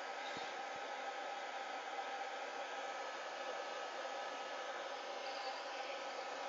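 A hose-nozzle blow dryer blowing steadily on a wet dachshund's coat: an even rush of air with a faint steady hum.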